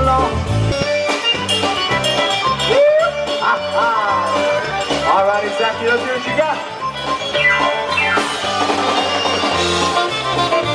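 Live polka band playing an instrumental passage over a steady, pulsing bass line, with a lead line of sliding, bending notes through the middle.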